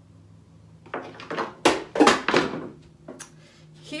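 Scraping and knocks as the screen-covered sheet of wet handmade paper is moved aside on the work surface, loudest about two seconds in, then a single click.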